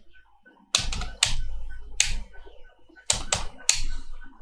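Computer keyboard keys being typed in quick clusters of clicks, about a second in, at two seconds and again near the end, as numbers are entered into a spreadsheet.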